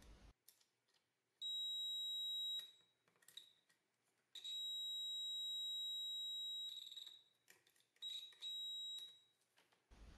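Continuity beeper of an Agilent U1273AX multimeter sounding a steady high tone each time the probes bridge the TV power supply's AC input to the bridge rectifier: a beep of about a second, a longer one of about two seconds, then two short beeps near the end, with faint probe clicks between. The tone signals a near-zero-ohm path, showing the mains fuse is intact.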